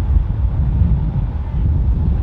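Strong wind buffeting a rod microphone in its wind muff: a loud, uneven low rumble.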